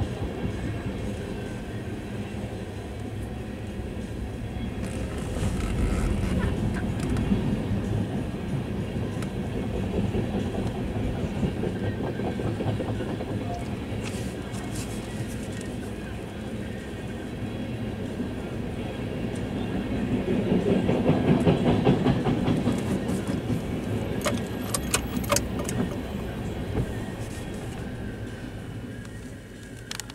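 Freight train of tank cars rolling slowly past, a steady rumble of steel wheels on the rails that swells and fades, heard from inside a car. A cluster of sharp clicks comes a little past two-thirds of the way through.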